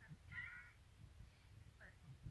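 A woman's voice speaking quietly, with a brief high-pitched sound about half a second in.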